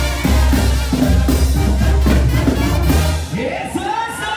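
Live banda music played loud: trumpets and drums over a heavy bass line. The band stops about three seconds in, leaving crowd voices.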